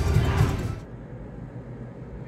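Konami video slot machine playing its bonus-win music as the win meter counts up, cutting off abruptly under a second in. After that only a quiet, low steady hum.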